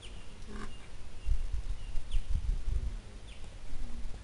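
Low, uneven rumbling gusts from wind buffeting the microphone, loudest through the middle. Short, faint high bird chirps sound a few times over it.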